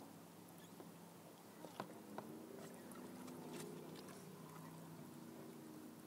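Quiet water at a kayak: a few faint small clicks and drips. A faint steady low hum comes in about two seconds in and fades before the end.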